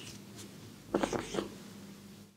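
Ear hair being singed with a lighter flame: three or four quick, short pats and crackles about a second in, as the hand pats the ear to put out the singed hairs, over a faint steady hum.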